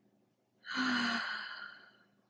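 A woman's audible sigh: one breath with a brief voiced start, coming about half a second in and fading away over a little more than a second.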